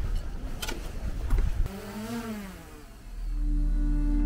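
Outdoor street noise with a few sharp clicks, then a motor's pitch briefly rising and falling over about a second. About three seconds in, ambient music with long, steady low tones comes in and becomes the loudest sound.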